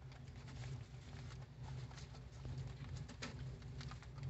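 Baby rabbits nibbling and nosing through grass: faint scattered crisp clicks and rustles over a low steady background hum.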